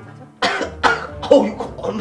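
A man breaks into a sudden fit of coughing, about three harsh coughs in a second starting about half a second in, sputtering as if he has choked on a drink.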